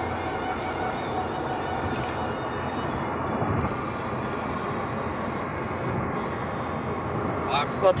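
Steady road and tyre noise heard from inside a car cabin moving at highway speed.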